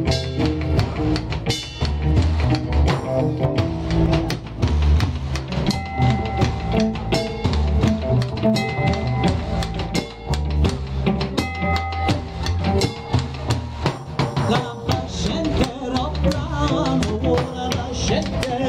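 A live folk band playing a steady dance tune, with a large rope-tensioned bass drum and a hand-held frame drum keeping a regular beat.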